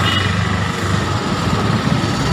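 Steady low engine rumble, at fairly high level.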